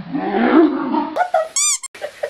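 A frightened domestic cat growling, a low, rough yowl lasting about a second, then a short high-pitched squeal near the end.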